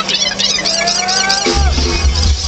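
Live electronic dance music through a festival sound system: a synth line sliding upward in pitch over crowd noise, then a heavy, loud bass comes in about one and a half seconds in.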